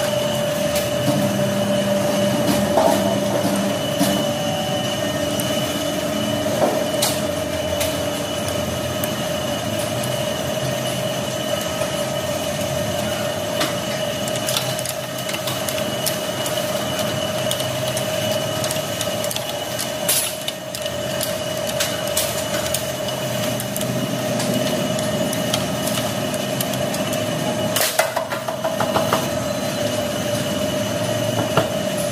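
A steady mechanical hum with a high whine runs throughout. Scattered sharp metallic clicks and taps come from hand tools on the motorcycle's engine casing and bolts, with a cluster of quick clicks near the end.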